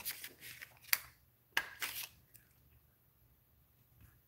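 Several faint, sharp ticks and taps over about two seconds as a pointed craft tool picks small adhesive enamel pebbles off their backing sheet and presses them onto a cardstock card.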